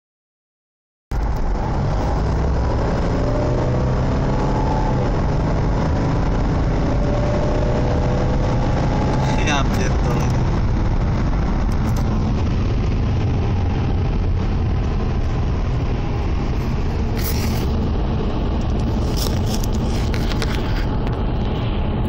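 A Mercedes-Benz CLS 350 CDI's 3.0-litre V6 diesel, heard inside the cabin under hard acceleration with the automatic in drive: a steady low engine drone rising in pitch, mixed with road and wind noise. It starts suddenly about a second in.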